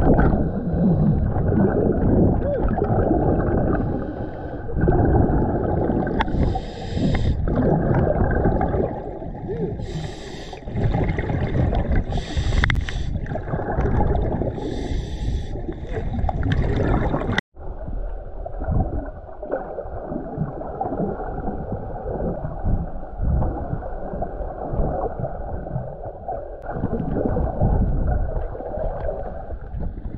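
Audio from a camera held underwater: a dense, muffled rumble and gurgle of water against the housing, with short bursts of bubbling hiss every two to three seconds in the first half. The sound breaks off for an instant about halfway through and goes on in the same way.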